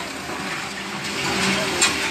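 Excavator engine and hydraulics running at a demolition, a steady noisy hum, with one sharp crack just before the end.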